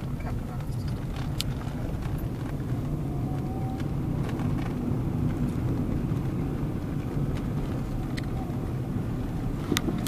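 Car driving, heard from inside the cabin: a steady low rumble of engine and tyre noise, with a single sharp click near the end.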